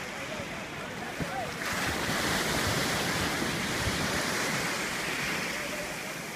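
Sea surf breaking and washing in the shallows, swelling into a loud rush about a second and a half in and easing off near the end.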